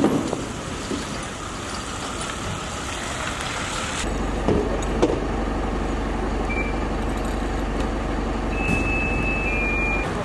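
A parked fire engine's diesel engine idling: a steady low drone with fast, even pulsing that comes in about four seconds in, over street noise with a few knocks. A few short high tones sound near the end.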